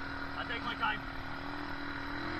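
ATV engine running at idle with a steady low hum, with faint voices briefly about half a second in.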